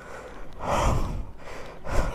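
A man's short, breathy exhale close to the microphone, about half a second long and a little under a second in, with a low rumble of air on the mic under it.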